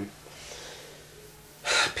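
A quiet pause, then a man's short, sharp intake of breath through the mouth near the end.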